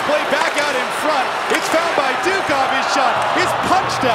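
Ice hockey game sound: a din of many arena voices, with sharp clacks of sticks and puck on the ice and boards scattered through it.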